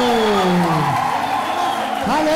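A voice drawing out a long note that slides down in pitch and fades about a second in.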